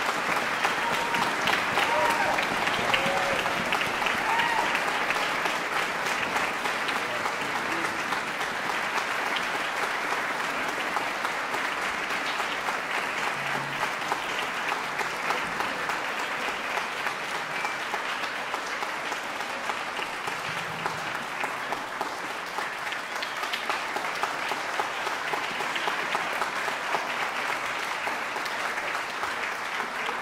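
Concert audience applauding, a dense steady clapping that eases slightly over the half minute, with a few voices calling out in the first few seconds.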